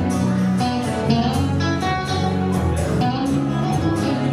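Live acoustic and electric guitars playing an instrumental passage, the acoustic strummed in a steady rhythm under sustained electric guitar notes, with no vocals.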